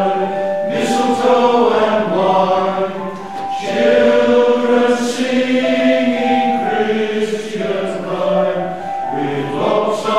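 Male voice choir singing in harmony, holding chords in several parts in a church.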